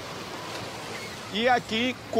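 Sea surf washing on a rocky shore, a steady rush of waves. A voice starts speaking about one and a half seconds in.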